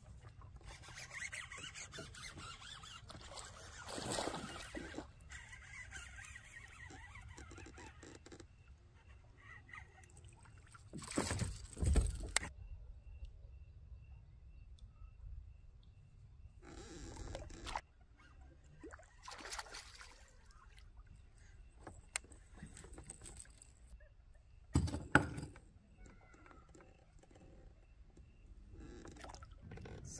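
Water and kayak handling sounds: short splashes, scrapes and knocks against the hull, coming in separate bursts, the loudest about twelve seconds in, over a faint quiet background.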